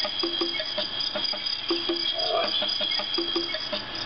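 Small speaker of a Cloud B Gentle Giraffe sound box playing its 'play' nature soundscape: a steady high insect-like trill with evenly spaced ticks about three a second and short low paired notes recurring every second or so.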